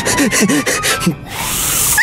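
A man making short wordless vocal sounds, the pitch sliding up and down in quick strains, for about the first second, followed by a rising hiss that swells toward the end.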